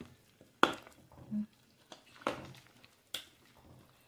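A ceramic soup spoon stirring soup in an enamelled pot, clinking against the pot three times, the first clink, a little over half a second in, the loudest.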